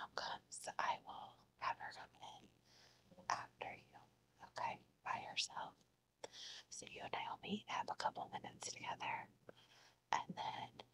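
A woman whispering softly and continuously.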